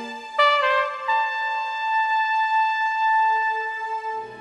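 Incidental music led by a trumpet. It comes in about half a second in with a few short notes stepping down in pitch, then holds one long steady note, with a lower note joining near the end.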